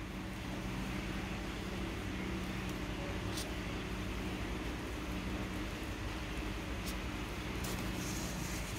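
Steady low mechanical background hum, with a few faint clicks from hand-sewing a sail slider's webbing with needle, thread and sailmaker's palm.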